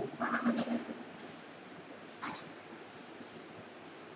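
A short animal call, about half a second long, near the start, its pitch broken into a few quick pulses. A fainter brief noise follows about two seconds in.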